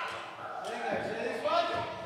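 A man's and a woman's voices at close microphones, laughing and speaking without clear words.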